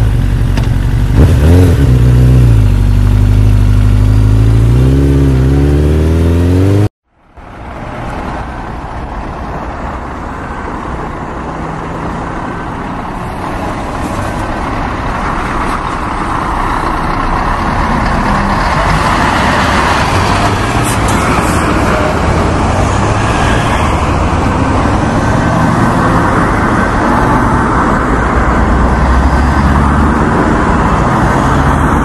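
Motorcycle engine revving, its pitch rising and falling twice, cutting off suddenly about seven seconds in. A motorcycle's running engine and road noise then build gradually and stay loud.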